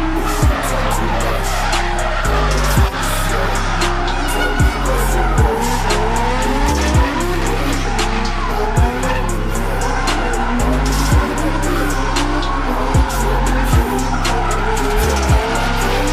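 Drift cars' engines revving up and down and tyres squealing as cars slide past in a tandem drift. A hip-hop track with heavy bass and a steady beat plays underneath.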